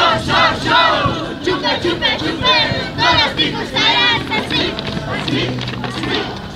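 A group of young Tinku dancers shouting and calling out together, overlapping high-pitched cries repeated every second or so.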